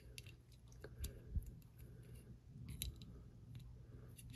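A few faint, scattered clicks and scrapes of a small metal screw's captive end being fitted by hand into the handle scale of a Spyderco Manix 2 Lightweight folding knife.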